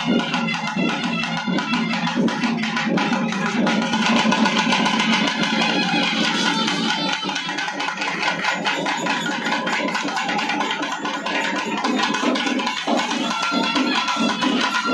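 Temple festival drums (kodai melam) playing a fast, dense beat, with a higher held melody line over them.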